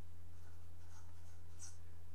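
Felt-tip marker writing numbers on paper, faint and soft, over a steady low hum.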